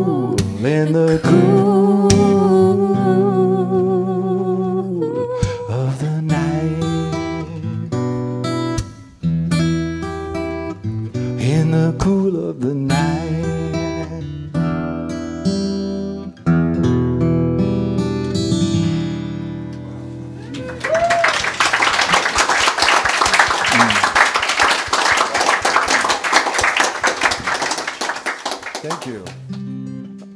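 A man singing over a fingerpicked acoustic guitar as a folk song draws to its close, the last notes held and left to ring. About two-thirds of the way through, a small audience applauds for about eight seconds.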